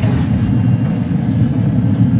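Smoker's fan running with a steady low rumble.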